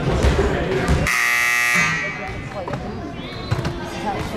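Gym scoreboard horn sounding once, a steady buzzing blast a little under a second long, during a timeout with the clock stopped, typically the signal that the timeout is over. Voices chatter around it in the gym.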